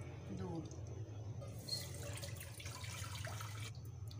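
Milk being poured into a metal cooking pot, a splashing pour that starts about one and a half seconds in and stops just before the end.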